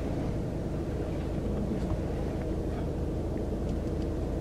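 Steady low rumble of street traffic and vehicle engines, with a few faint short ticks over it.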